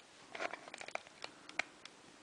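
Faint handling noises: rustling of a crocheted cotton piece turned in the hand while hot glue is run around it, with a few light clicks.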